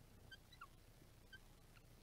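Near silence, with a few faint short squeaks of a marker writing on a whiteboard.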